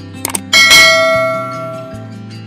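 A quick double click, then a bright bell ding that rings out and fades over about a second and a half: the notification-bell sound effect of an animated subscribe button, over background music.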